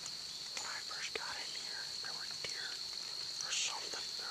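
A hunter whispering softly, with a hissy sound near the end, over a steady high-pitched whine.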